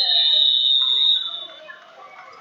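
Wrestling referee's whistle blown in a long, steady, shrill blast, overlapped by a second whistle at a slightly lower pitch. Both stop about a second and a half in.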